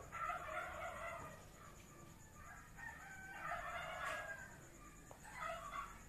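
Rooster crowing faintly in the background, three drawn-out crows in a row.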